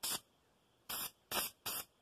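Aerosol can of grey primer spraying in short bursts, about five hisses in two seconds with brief gaps between, laying on light coats.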